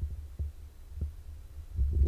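A gap between speech filled by a low rumbling hum, with a couple of faint soft knocks about half a second and a second in: handling noise from handheld microphones.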